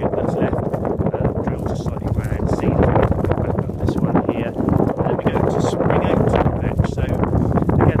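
Wind buffeting the microphone, a loud, gusting rumble that persists throughout, with a voice partly buried under it.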